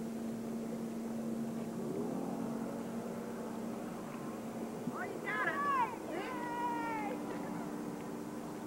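A distant motorboat engine drones steadily and steps up in pitch about two seconds in. About five and six seconds in come two short, high, falling cries, louder than the engine.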